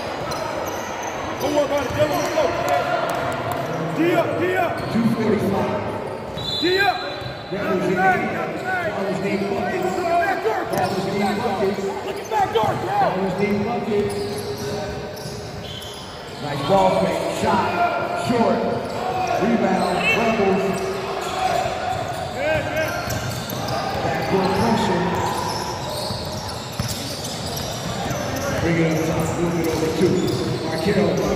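Basketball being dribbled on a hardwood gym floor during play, with players' and spectators' voices throughout, in a large gym hall.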